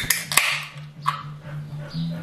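An aluminium can of Monster Energy Ultra being opened: a sharp click of the ring-pull, a second crack about half a second in, and a short fizz of escaping carbonation.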